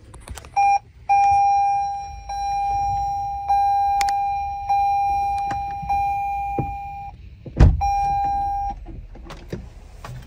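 Electronic dashboard warning chime in a 2021 Toyota Sienna Hybrid: one steady high tone. It starts with a short blip, then holds for about six seconds, struck afresh about every second and a bit and fading slightly after each strike. Near the end a heavy thump cuts in, and the tone sounds once more for about a second.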